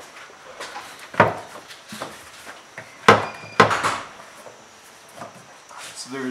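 Hard plastic knocks and creaks as the M3's loosened intake airbox is worked upward off its throttle bodies: a few sharp knocks, the loudest about three seconds in, with a short squeak among them.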